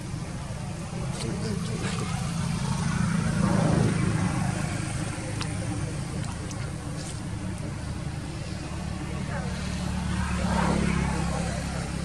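A low engine hum of motor vehicles that swells twice, as if vehicles pass by, with faint voices in the background.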